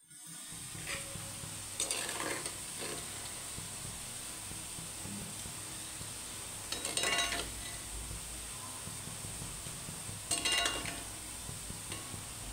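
Palm-fruit fritters deep-frying in hot oil in a cast-iron kadai, a steady sizzle. Three short bursts of a metal slotted spoon scraping and clinking in the pan come about two seconds in, about seven seconds in, and near the end.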